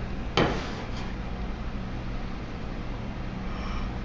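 Steady low hum of an overhead projector's fan, with one short knock about half a second in as a glass bottle in its balancing holder is set down on the bench.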